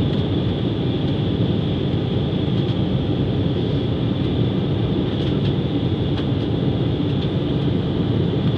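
Cabin noise of an Embraer E-Jet airliner climbing just after takeoff: its turbofan engines and the airflow make a steady low rumble with a thin, constant high whine above it.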